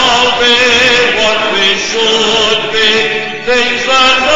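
Congregation singing a hymn together, many voices holding long, slow notes.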